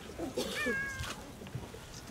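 A short, high-pitched mewing cry about half a second in, wavering at first and then held level for about half a second, over a faint background murmur.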